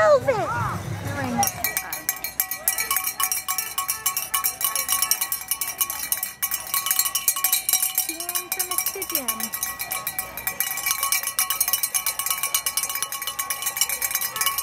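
A handheld cowbell shaken rapidly and without a break, a fast rattle of strokes over a steady ringing tone, starting about a second and a half in. A voice is heard before it begins, and a faint voice is heard partway through.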